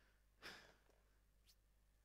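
Near silence, broken about half a second in by one short breath or sigh from the man, close on his headset microphone, and a faint click later on.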